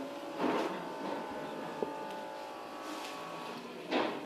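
Small electric pump of a Medilis automatic upper-arm blood pressure monitor running steadily, inflating the cuff for a reading. Two short bursts of noise come about half a second in and near the end, with a small click just before two seconds.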